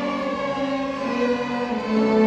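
Youth string orchestra of violins, cellos and double bass playing long, held chords that change a couple of times.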